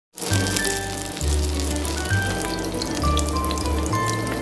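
Background music with a slow bass line and held melody notes, over oil sizzling and crackling as egg-battered pollack fillets fry in a pan.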